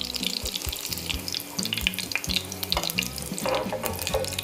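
Olive oil sizzling and crackling in a sauté pan where salmon cakes are frying, over background music with low sustained notes.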